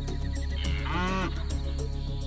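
A single cow moo, just under a second long, rising and then falling in pitch, over steady background music.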